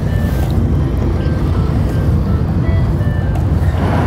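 Background music with a steady, heavy bass line and a few faint high notes.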